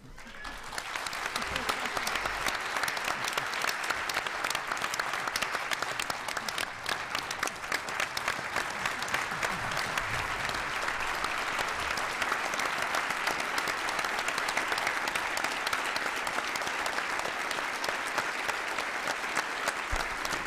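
Audience applauding: a full hall clapping steadily, starting about half a second in and holding at an even level without fading.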